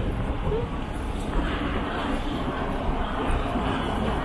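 City street ambience: a steady low rumble of traffic with scattered voices of passers-by.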